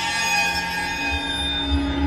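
Cinematic studio-logo sting: a sustained synthesized chord of steady held tones over a deep low rumble, swelling and building in intensity.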